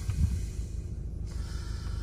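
A steady low hum inside a car cabin, with a brief soft low sound just after the start.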